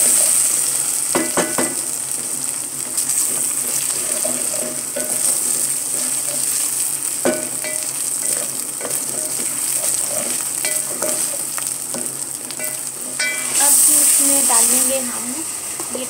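Sliced onions sizzling in hot oil in an aluminium pot while a spatula stirs them, scraping and now and then knocking against the pot. The sizzle swells louder briefly near the end.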